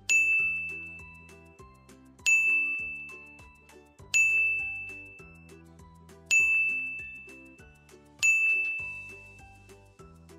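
A bright single-note chime sound effect dings five times, about two seconds apart, each ring fading away before the next, over soft background music. Each ding cues one syllable of the drill for children to read aloud.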